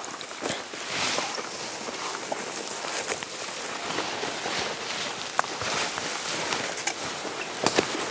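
Several people walking fast through dense undergrowth: steady rustling of leaves and stems brushing against legs and clothing, with frequent short snaps of twigs, the sharpest near the end.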